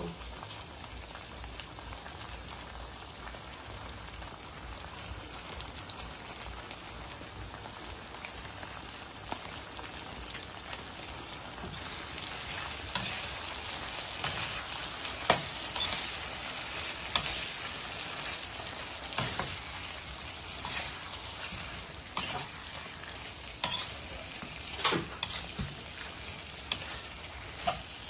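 Shrimp frying in a metal wok with oyster sauce just poured over them, a steady sizzle. From about twelve seconds in, a spatula stirs the shrimp and knocks against the wok in irregular sharp clacks over a louder sizzle.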